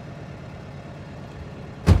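Steady low rumble of an idling car, with a sudden loud thump near the end.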